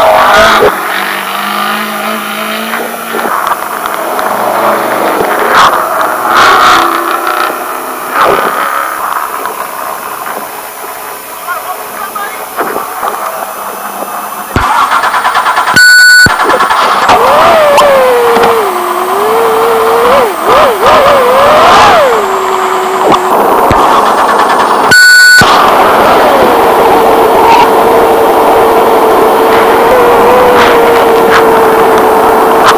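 A Trophy Truck's race engine heard from inside the cab while the truck is stuck, hooked with another truck. It runs low for a while, then is revved up and down unevenly in short surges before holding a steady high pitch. Two brief, loud electronic-tone bursts cut in partway through and again near the end.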